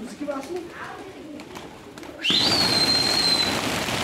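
Domestic pigeons cooing softly, then about two seconds in a sudden loud rush of many wingbeats as the flock takes off. A long high whistle sounds over the wingbeats and falls slightly in pitch.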